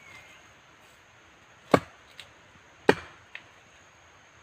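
Two chopping strokes of a large knife blade into wood, about a second apart. Each is followed by a fainter knock.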